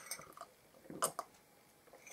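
A man sipping tea from a mug: two or three short, faint sips or swallows about a second in, with little else around them.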